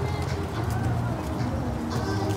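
Feral pigeon cooing.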